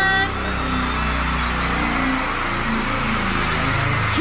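Live concert between songs: a low, steady synth-bass interlude plays under the noise of a cheering, screaming arena crowd. A held sung note cuts off just after the start.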